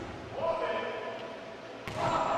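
A volleyball struck by hand with a sharp smack near the end, ringing in a large gym, after a held shout about half a second in.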